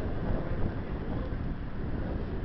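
Wind buffeting the microphone over a steady low rumble, with a red SBB Re 4/4 II electric locomotive standing nearby.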